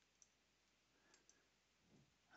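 Near silence: room tone with a few faint computer mouse clicks, one early and two close together about a second in.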